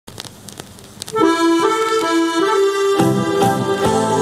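Song played from a vinyl record: a few clicks and crackles of the stylus in the lead-in groove, then about a second in the music starts with a sustained melody line, lower notes joining near the three-second mark.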